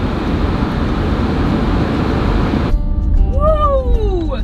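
Loud, steady wind and ship noise on an open ferry deck, which cuts off abruptly about two and a half seconds in. It gives way to the low rumble of a car cabin, with one long voice-like sound rising and then falling in pitch.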